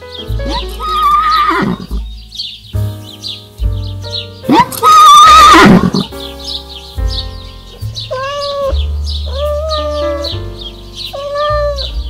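A horse whinnying over background music: a first neigh about a second in, then a long, very loud whinny with a wavering pitch that drops away at its end, about four and a half seconds in. Three shorter animal calls of steadier pitch follow in the second half.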